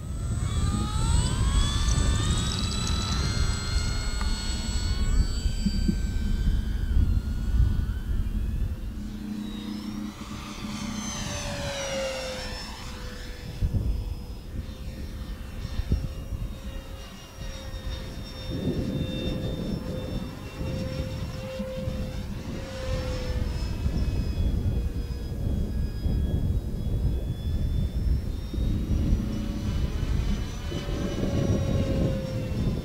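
Electric motor and propeller of an E-Flite 1.2 m P-47 Thunderbolt RC model flying on a 3-cell battery: a whine that climbs in pitch over the first several seconds, sweeps up and down as the plane passes, then holds steady. A low rumble runs underneath.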